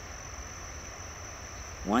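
Heavy surf heard from a distance in stormy weather: a steady wash of noise with a low rumble underneath, and a thin, steady high-pitched trill over it.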